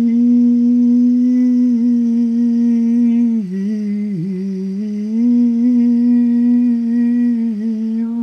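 A single voice chanting a mantra as a long hum held on one steady note, dipping in pitch briefly about halfway through before holding the note again.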